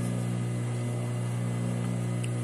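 Steady low hum of an idling industrial sewing machine motor, left running while the needle is still.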